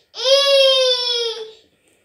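A toddler crying: one long, loud wail at a steady pitch, held for about a second and a half and then dying away.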